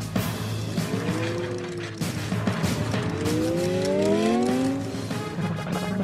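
Cartoon race-car sound effect of an engine revving and tyres squealing under a rushing noise as the snail speeds off. The pitch swells twice, the second time longer and rising.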